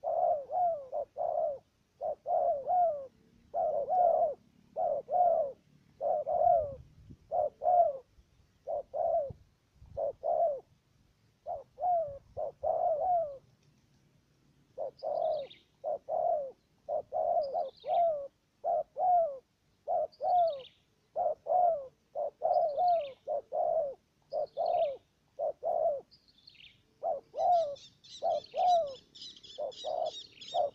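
Spotted doves cooing over and over in short clusters of coos. From about halfway, a small bird's high, falling chirp comes every second or so, and near the end a higher chattering joins in.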